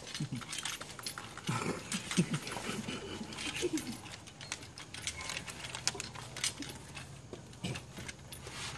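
Scattered light wooden clicks and knocks, irregular throughout, from a small wooden hand palanquin held and jostled between two bearers.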